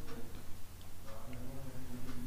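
A few light, unevenly spaced ticking clicks over a low steady hum.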